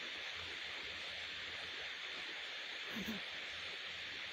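Steady, faint hiss of room tone and microphone noise, with a brief faint murmur from the narrator about three seconds in.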